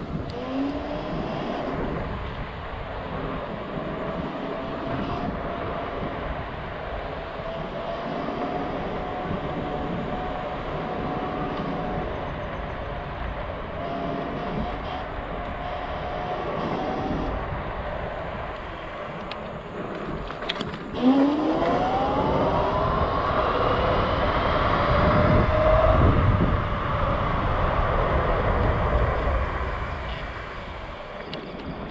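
Zero 11X electric scooter's dual hub motors whining as it rides, over wind and tyre noise. The whine rises at the start and then holds steady. About two-thirds of the way in it sweeps sharply up in pitch and gets louder as the scooter accelerates hard.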